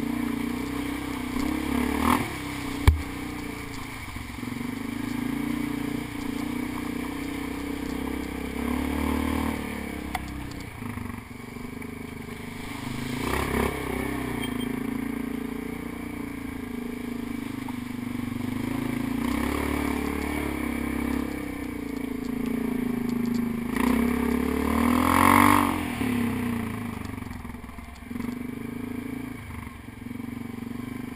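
ATV engine running close up under changing throttle while riding over a rocky, wet creek bed, with stones clattering and scraping under the tyres. A sharp knock comes about three seconds in, and the engine surges louder near the end.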